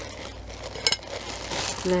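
Plastic wrap rustling and crinkling as a titanium camping pot and lid are unwrapped, with one sharp click a little under a second in.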